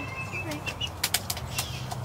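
A Cornish Cross broiler chick flapping its wings and scrabbling with its feet on a plastic Ziploc bag on a scale, slipping on the bag, with a burst of sharp scratchy clicks about a second in. A few faint chick peeps are heard.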